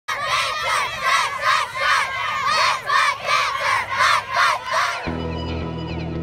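A group of children shouting a chant together in a quick, even rhythm. The chant cuts off about five seconds in and music takes over.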